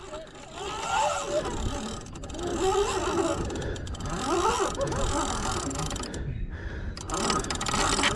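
Fishing reel's drag clicking and buzzing as a hooked paddlefish runs and takes line, with faint voices in the background.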